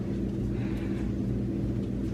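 A steady low hum with no other distinct sound: room tone.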